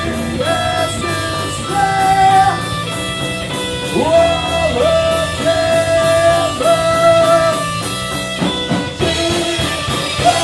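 Punk rock band playing live, loud and steady: electric guitar, bass guitar and drum kit with regular cymbal strokes, and a singer's voice holding long, sliding notes over it.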